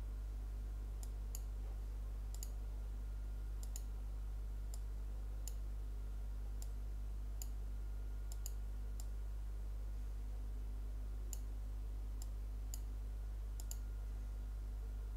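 Computer mouse clicking: short, sharp single clicks at irregular intervals, roughly one or two a second, over a steady low hum.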